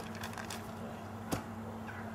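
A paper map being handled, making light rustles and one sharp crackle just past halfway, over a steady low hum.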